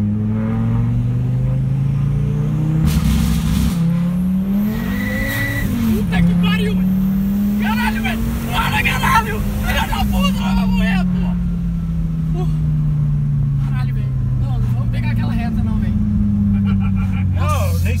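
Turbocharged car of over 400 hp accelerating hard, heard from inside the cabin: the engine pitch climbs, drops at a gear change, climbs again, then falls away steadily as the car slows. A rushing hiss comes around the shifts, and people exclaim over the engine midway.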